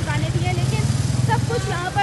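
A voice speaking over a steady low engine hum from a vehicle, the hum strongest in the first second or so.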